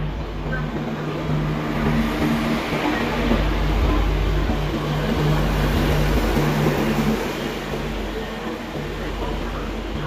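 Electric locomotive and double-decker passenger coaches rolling into a station platform: a steady rumble of wheels on rail with the locomotive's low hum. It swells as the train passes close, loudest in the middle, then eases off a little.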